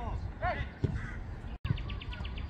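Short shouted calls from players on a football pitch, with a dull thud of a ball kick just under a second in; the audio cuts out for an instant near the end.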